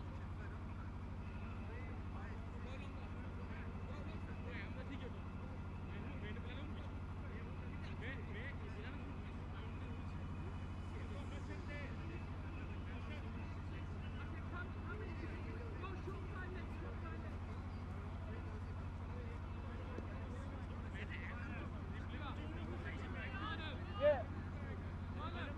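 Faint distant voices of cricket players talking and calling across an open field, over a steady low hum.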